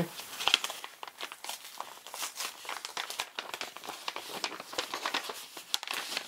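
Crinkling and rustling of a printed gift packet being pulled open and unfolded by hand, a dense, irregular run of small crackles.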